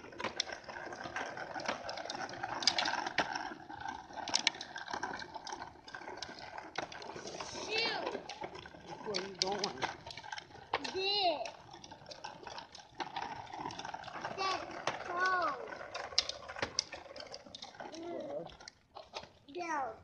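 Plastic tricycle wheels clattering and clicking over concrete, with a small child's high wordless squeals and babble at times.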